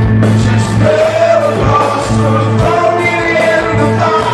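Live rock band playing with electric guitars, bass and drums, and a lead vocalist singing a melody that comes in about a second in. Heard from within the crowd in a large hall.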